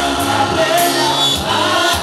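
Live gospel worship singing: a woman leads the song into a microphone while a group of singers joins in behind her, over a steady instrumental accompaniment.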